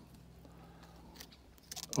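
Mostly quiet, with a faint click about a second in and a few small crunching clicks near the end as hand pruners close on thin peach twigs.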